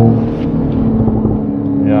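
Mercedes-AMG GLE 53 Coupé's turbocharged inline-six pulling under part throttle in Sport Plus mode, heard from inside the cabin as a steady engine and exhaust note. Plenty of exhaust sound still comes through despite the petrol particulate filter.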